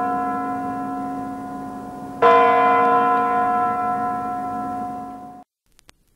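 A bell struck twice, about three and a half seconds apart. Each stroke rings on and slowly fades, and the sound is cut off abruptly near the end.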